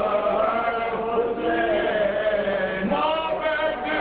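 A crowd of men chanting together, many voices overlapping in one continuous chant.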